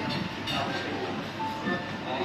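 Restaurant room noise: a steady hubbub with faint background music playing.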